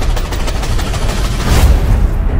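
Film-trailer explosion sound effects: a loud, dense crackle of blasts that swells into a bigger explosion about one and a half seconds in.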